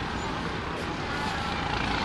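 Steady low rumbling of wind on the microphone, with faint voices of an audience mixed in.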